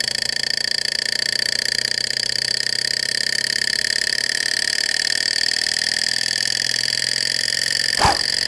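Small alcohol-fired model Stirling engine running steadily on its own after a hand push to start it: a fast, even mechanical chatter from its flywheel and linkage with a steady high whine.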